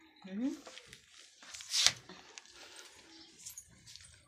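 A short questioning "hmm" from a voice, rising in pitch, then a brief loud rushing burst a little under two seconds in, followed by faint small clicks.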